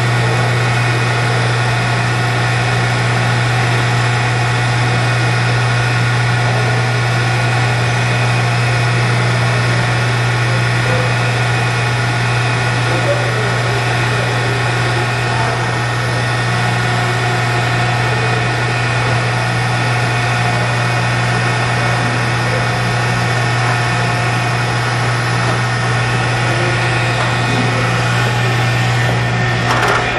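Blommer melting tank's 15 hp electric motor drive running its sweep agitator: a loud, steady hum with a strong low drone and a cluster of steady higher tones above it.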